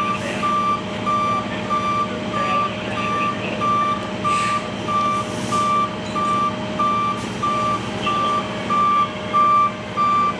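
Vehicle back-up alarm beeping steadily at one pitch, about one and a half beeps a second, over the low, even running of a truck engine. A few brief hisses sound around the middle.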